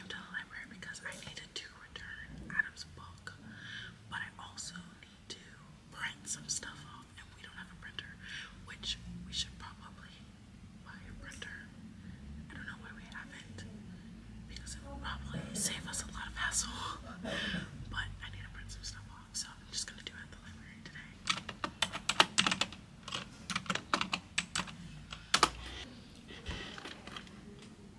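A woman whispering, with scattered sharp clicks; from about three quarters of the way in, a fast run of clicks from typing on a computer keyboard.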